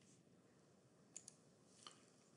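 Near silence with faint computer mouse clicks: two quick clicks just over a second in, and one more near the end.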